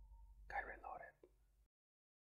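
A faint, brief whisper-like voice sound, about half a second long, over a low hum. The audio cuts off suddenly shortly before the end.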